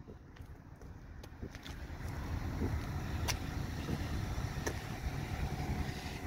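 Low, steady outdoor rumble that grows a little louder after about two seconds, with a couple of faint clicks.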